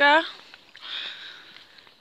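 A woman's voice trails off at the end of a phrase, then a short, soft breathy hiss about a second in, over a low outdoor background.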